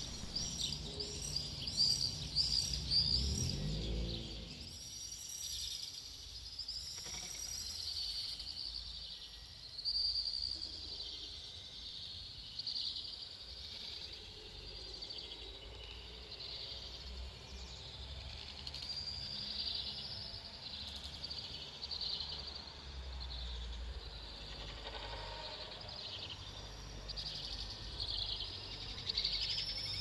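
Birds calling continuously in many short, high-pitched chirps over a faint low rumble.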